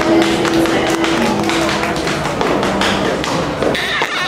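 Acoustic guitar's closing chord ringing and fading out over the first two seconds, under a run of quick, sharp taps that continue after the chord is gone.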